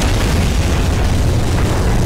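Loud explosion sound effect from an animated battle scene: a sustained blast, heaviest in the bass, that runs on without a break.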